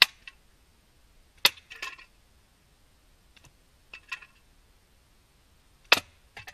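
Slingshot ammo striking drink cans set up on a board: a series of sharp metallic hits roughly every one to two seconds, each followed by a brief rattle as a can is knocked off and clatters down.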